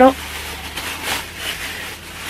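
Plastic bag rustling and crinkling as a grill/sandwich maker is pulled out of its plastic wrapping, with a couple of louder swells of rustle.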